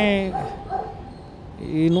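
A man's voice speaking Telugu: a word trails off with falling pitch, then a pause of about a second and a half before he starts speaking again near the end.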